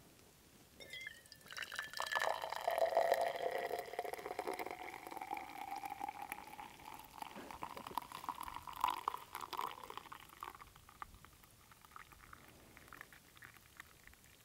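Liquid poured from a metal flask into a small cup. The pitch of the filling rises steadily as the cup fills, and the pour stops at about ten seconds, leaving a few faint clinks.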